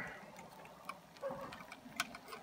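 Faint clicks of metal tongs and a fork against a plate as a grilled ribeye steak is set down, with one sharper click near the end.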